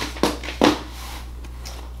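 Brief handling noises from a cardboard product box, two short rustles or knocks in the first second, then a quiet room with a steady low hum.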